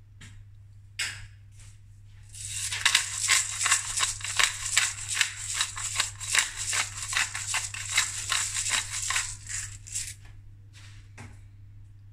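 Black pepper being ground from a hand pepper mill: a dry, crackling grind in pulses of about two strokes a second, starting about two seconds in and stopping near ten seconds.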